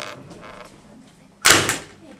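A notebook with a small sheet of paper laid on top is dropped and lands flat on the floor with one loud slap about one and a half seconds in. The single landing is the sign that the paper fell together with the notebook rather than fluttering down after it.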